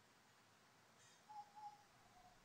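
Near silence, with a faint short bird call of two even notes about a second and a half in.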